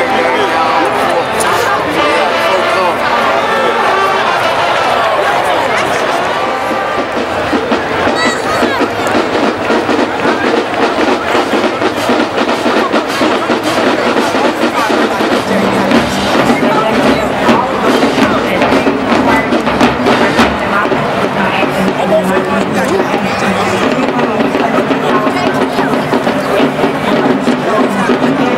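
College marching band playing in the stands: sustained brass chords from the trumpets and trombones over the first several seconds. The sound then turns to a denser drumline passage of snare drums and crash cymbals under the horns, with a steady low bass note from about halfway through.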